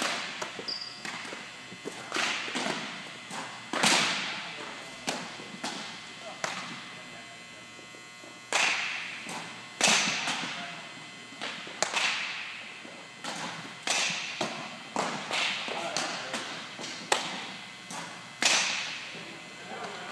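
Sharp pops of baseballs smacking into leather catcher's mitts, repeated about every one to two seconds, each ringing out with a long echo in a large gym.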